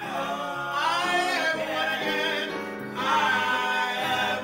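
A man and a woman singing a gospel worship song together, in two sung phrases with a short break between them.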